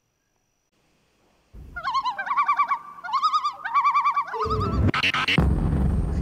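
Silence, then about a second and a half in a bird-like warbling whistle in short trilled phrases for about three seconds. Near the end it gives way to a louder, breathy, noisy sound.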